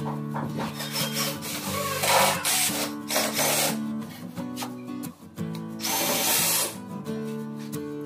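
Cordless drill driving screws into the panels of a melamine-faced plywood box, in two main runs of about a second or more each, over background music.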